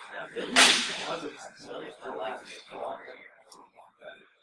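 A sharp knock from a handheld microphone being picked up and handled, about half a second in, with low voices talking.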